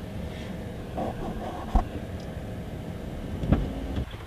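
Low steady rumble of a car heard from inside the cabin, with two short thumps, one just under two seconds in and one near the end.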